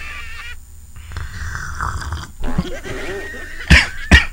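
Goat-like bleating with a wavering pitch, followed near the end by a sharp, loud knock.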